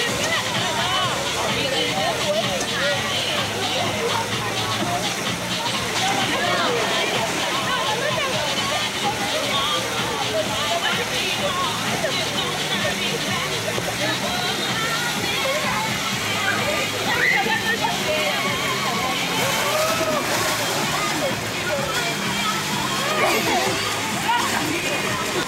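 Many overlapping voices calling and chattering over steadily running and splashing pool water, with music playing in the background.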